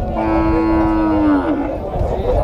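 A cow mooing once: one long, steady call of about a second and a half that drops in pitch as it ends.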